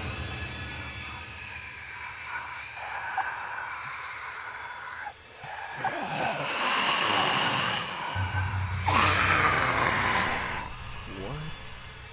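Eerie soundtrack music fades out, then a man gasps and groans in distress, with a loud, harsh breath or groan about nine seconds in.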